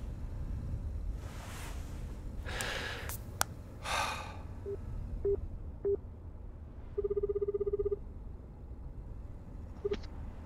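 A man's heavy breathing and sighs, a couple of sharp clicks, then three short beeps of a phone call being placed. A telephone ringback tone follows: one low fluttering ring lasting about a second, the Japanese-style ringing signal, with the next ring starting just at the end.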